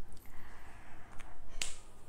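Two short sharp clicks, a faint one about a second in and a louder one just after, over faint room noise.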